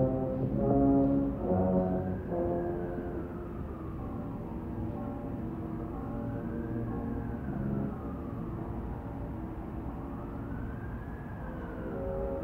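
Orchestral film score with brass from a 1950s TV movie, muffled as if heard through a wall, with held chords that are loudest in the first two seconds. Over it, a slow wail rises and falls three times, each rise and fall taking about four seconds.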